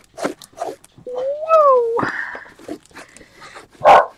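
A dog gives one whine of about a second that rises and then falls in pitch, ending in a short breathy huff.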